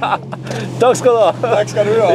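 People laughing and talking inside a rally car, over the steady low hum of the car's engine.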